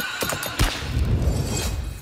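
Horse sound effect with hoofbeats and a whinny, then a deep boom about half a second in that fades over about a second.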